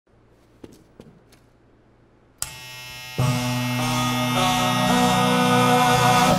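A few footsteps clicking on a hard floor. About two and a half seconds in, a hummed note starts; under a second later more voices join into a loud a cappella chord in barbershop style, held with some notes shifting.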